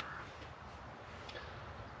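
Quiet background: a faint, steady hiss with a low rumble and no distinct sound event.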